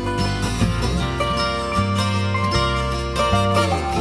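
Background music: a plucked-string tune over bass notes.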